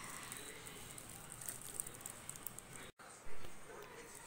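Faint rustling and crinkling of thin plastic food gloves handling cupcakes, with small ticks as the tops are pulled off. The sound cuts out abruptly about three seconds in, followed by a brief louder sound.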